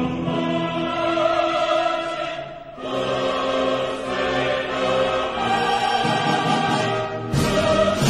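Background music with a choir over orchestra, long held chords. It dips briefly about a third of the way in and swells louder near the end.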